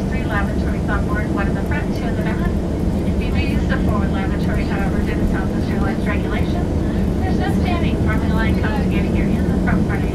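Steady low engine and airflow roar inside an airliner cabin during the climb after takeoff, with a voice talking over it throughout.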